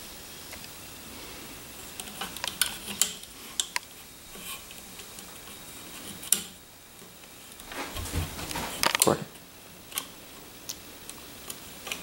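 Small, irregular clicks and taps of rubber loom bands being handled and stretched onto the pegs of a plastic bracelet loom, with a louder knock of the loom against the table about eight seconds in.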